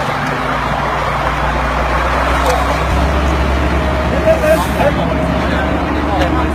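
Steady low rumble of road vehicles running nearby, with indistinct voices of people talking.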